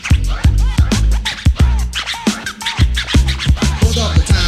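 Instrumental break in an old-school hip hop dub mix: turntable scratching in quick rising and falling sweeps over a drum-machine beat and deep bass.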